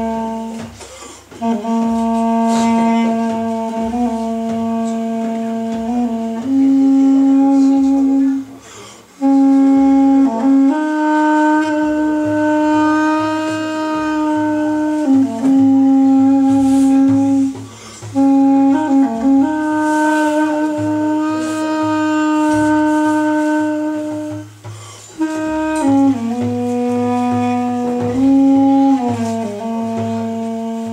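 Solo duduk, a double-reed woodwind, playing a slow melody of long held notes in its low register, stepping up and back down between neighbouring pitches, with short breaks for breath every several seconds.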